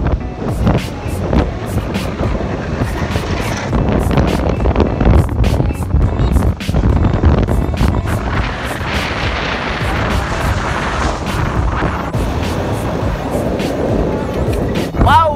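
Wind rushing and buffeting the microphone on a moving motorcycle, with road and engine noise underneath.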